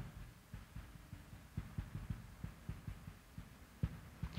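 Faint, irregular low taps and knocks of a marker writing on a whiteboard, with one sharper knock near the end.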